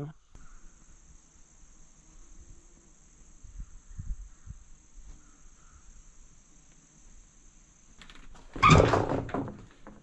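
Crickets chirping steadily in the background, with a few soft low thumps in the middle. Near the end comes a much louder noisy sound lasting about a second.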